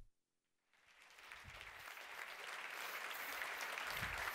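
Audience applauding. The clapping fades in about a second in, after a brief dead silence, and builds steadily.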